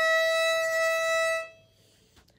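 Violin's open E string bowed in one long, steady note, held about a second and a half and then stopped.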